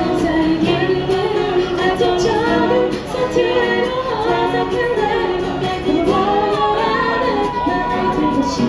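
Two women singing a pop ballad while each strums an acoustic guitar, a live busking duo.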